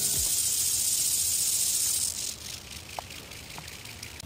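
Steady high-pitched buzzing of insects in summer grass, which drops sharply to a much fainter hiss about two seconds in, with a couple of faint ticks near the end.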